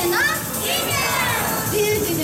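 Mostly speech: high-pitched young girls' voices talking excitedly through handheld microphones and a PA.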